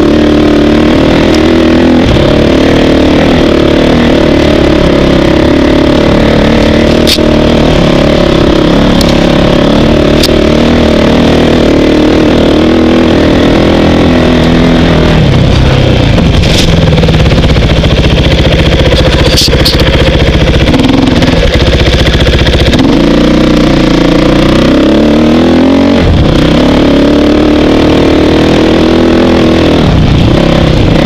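Dirt bike engine revving up and down continuously as it is ridden along a rough trail, loud throughout, with a few sharp clicks along the way.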